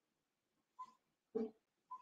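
Mostly quiet room tone, broken by a few brief faint sounds; the clearest comes about one and a half seconds in.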